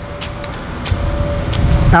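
Low rumble of street traffic, growing louder toward the end, over a faint steady hum.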